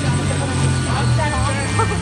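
Several people talking over a steady low rumble, with the voices clearest in the second half.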